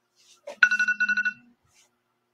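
An electronic alert tone, a rapid warbling beep lasting under a second, with a low steady buzz underneath, preceded by a soft click.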